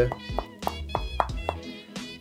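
Fingers tapping on the pastry top of a mince pie in its foil case: several light, sharp taps, heard over festive background music.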